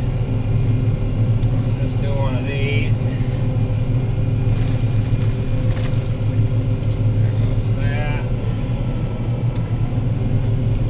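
Combine harvester running, heard from inside its cab: a steady, even low drone from the engine and machinery.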